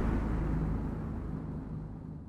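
Low rumbling tail of a cinematic boom from a logo-reveal intro sound effect, fading away steadily.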